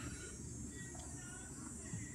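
Faint background ambience: a steady high-pitched chirring over a low rumble, with a few faint short chirps.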